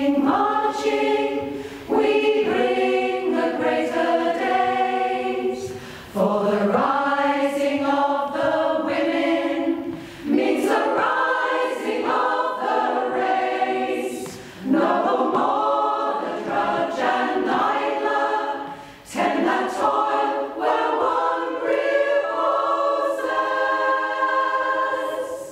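Mixed choir of men's and women's voices singing unaccompanied in several-part harmony, in phrases of about four seconds with short breaks for breath between them.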